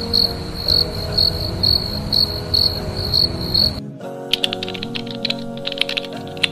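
Cricket chirping about twice a second over soft background music; about four seconds in it cuts off abruptly and rapid computer-keyboard typing clicks start over the music.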